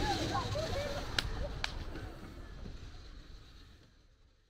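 Voices and laughter over low wind rumble on the microphone, with two sharp clicks a little over a second in. Everything fades out steadily towards the end.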